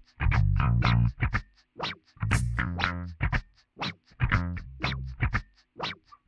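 A looped verse playing back on a VoiceLive 3 looper: a percussive rhythm loop with a bass line under it, in a repeating pattern.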